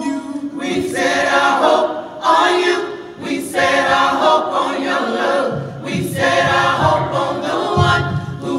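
A small mixed vocal ensemble of men and women singing a cappella in harmony, several voices holding sustained chords in phrases with short breaks between them.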